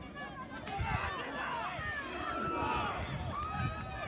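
Several people shouting and calling over one another around a football pitch, the voices growing louder about a second in.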